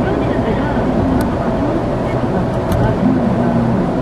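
Steady road and engine rumble inside a moving car's cabin, with a voice talking over it.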